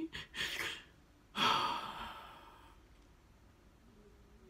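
A woman who is crying takes a quick breath in, then lets out a long sigh about a second and a half in that fades away.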